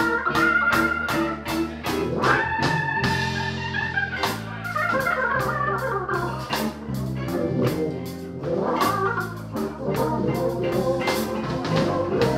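Hammond organ played in a blues jam, with held chords and running lines over electric bass and a steady beat of about four strokes a second.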